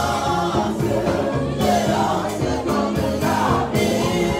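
Gospel choir singing a Christian song with band accompaniment and a steady drum beat.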